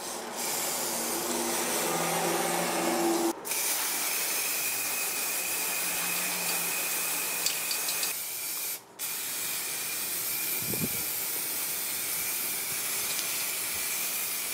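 Aerosol spray-paint can spraying in long, steady hissing bursts, cut off briefly twice, about three and a half and about nine seconds in, as the nozzle is released.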